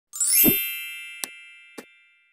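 Intro logo sound effect: a bright ringing chime that sweeps up and lands with a low thump, then rings out and slowly fades, with two light clicks in the second half.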